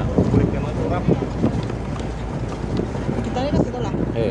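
Vehicle driving along a loose gravel road: a steady rumble of engine and tyres with scattered small knocks, and wind buffeting the microphone held out of the window.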